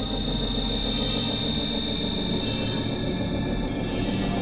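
Experimental synthesizer drone: dense sustained electronic tones with a steady high whistle-like tone on top that fades near the end, over a rapidly fluttering low rumble.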